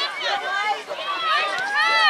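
Several high-pitched voices shouting and calling out over one another, with one long rising-and-falling call near the end.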